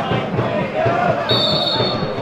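Referee's whistle blown about one and a half seconds in, a short steady high blast signalling that the free kick can be taken, over shouting voices.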